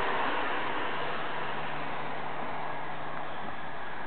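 Steady rushing outdoor background noise with a faint low hum underneath.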